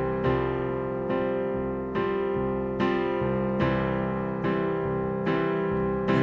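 Digital keyboard in a piano voice playing the verse progression in C: a C chord, a suspended F chord in the right hand over changing bass notes, back to C. Chords are struck in a steady pulse about every 0.8 seconds and left to ring.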